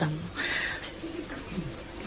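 Brief scattered chuckles and murmurs from a live audience during a comic pause, after the last spoken word trails off.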